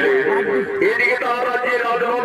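An amplified voice over loudspeakers, continuous and wavering in pitch.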